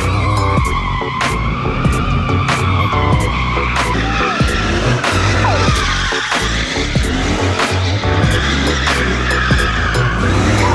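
Tyres of a fourth-generation Chevrolet Camaro squealing as the car spins donuts, the squeal wavering in pitch, under music with a steady beat.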